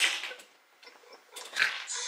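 A woman's breathy, wheezing laughter in two short gasping bursts about a second apart, high and squeaky enough to sound like a dog whimpering.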